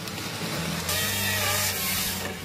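Volvo tracked excavator running as a forest harvester, with a steady low engine hum. About a second in, the Nisula harvester head's saw cuts through the log in a loud, harsh burst lasting just under a second.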